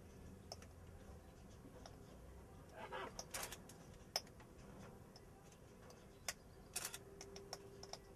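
A few faint, sharp clicks and taps over a quiet background, bunched together about three seconds in and again near seven seconds.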